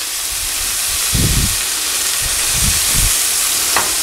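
Chicken breasts searing and pancetta frying in hot pans on a gas stove, giving a loud, steady sizzle that swells slightly, with a few dull low thumps about a second in and again near three seconds.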